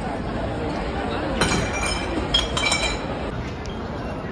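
Two clusters of sharp clinks with a short ring, about a second and a half in and again around two and a half seconds in, over the chatter of a crowd.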